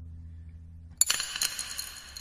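A pencil falling over and clattering onto a hard tabletop about a second in: a sharp hit followed by a few quick bounces with a light ringing tone. A low musical drone stops just before the hit.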